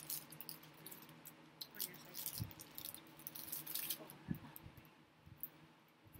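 Clear plastic pastry wrapper crinkling in short crackly bursts as it is handled, with two soft thumps in the middle.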